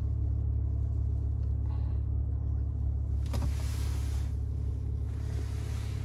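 Maserati Ghibli S twin-turbo V6 idling steadily, a low even rumble heard from inside the cabin. A single click sounds a little over three seconds in.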